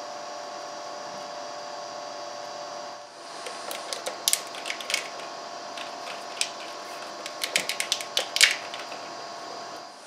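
Wire being handled, wrapped in plastic wire loom and cable-tied: scattered sharp clicks and rustles from a few seconds in, with a quick run of clicks near the end. Before that, a steady hum with a few held tones.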